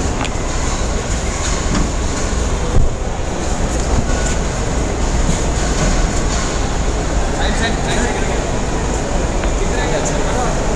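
Steady low rumbling noise of vehicles in a covered car park, with voices faintly under it.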